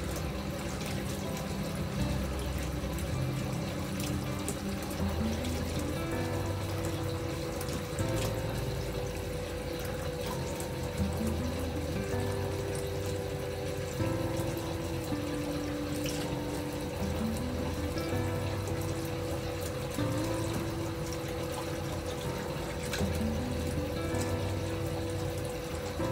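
Bathtub spout running at full pressure into a partly filled tub, a steady rush of water splashing into the bath water, under calm background music.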